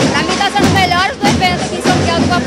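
Fanfare band music playing in the background under a woman's voice as she talks.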